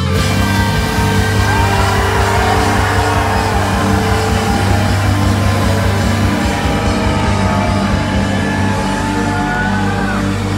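A live band playing loud amplified music through a club PA, heard from the crowd. Held low bass and keyboard notes run under sliding higher lines.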